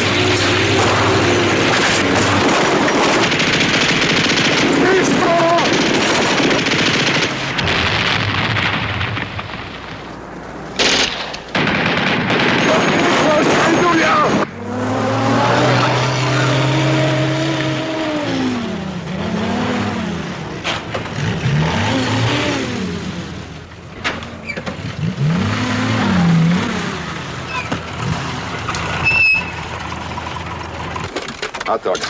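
A motor vehicle's engine running, its pitch rising and falling repeatedly in the second half, with a sharp bang about eleven seconds in.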